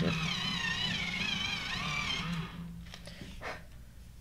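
Electric pencil sharpener whirring as a coloured pencil is sharpened, its pitch wavering, stopping about two seconds in.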